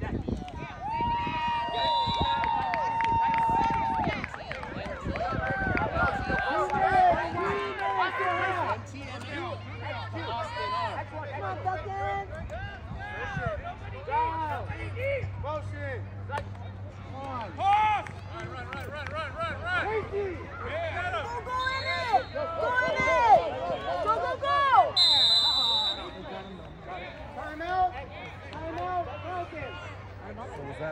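Voices of spectators and coaches calling out across a floodlit flag football field, with no clear words, over a low steady hum. A short, high whistle blast sounds about five seconds before the end, typical of a referee's whistle.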